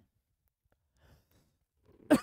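Near silence: room tone, with a faint breath about a second in.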